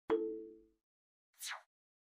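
Two short animation sound effects: a sudden pop with a brief ringing tone that dies away within about half a second, then about a second and a half in, a quick downward swish.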